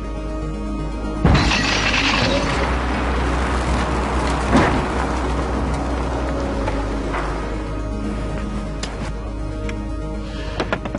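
A sudden bang about a second in as the crane's concrete block drops and the wire launch rig fires, followed by a rush of noise as the car is jerked forward at about two G, with a further thump about halfway through, over background music.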